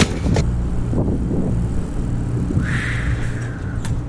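A steady low engine rumble, like a motor vehicle idling, runs under a few knocks and a brief rustle of trash being moved about inside a dumpster.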